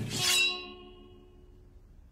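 A sharp, bright glassy crash just as the music stops, leaving a clear ringing tone that dies away over about a second.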